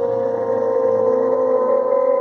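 A man's voice holding one long note at a steady pitch, a drawn-out cry with his mouth wide open.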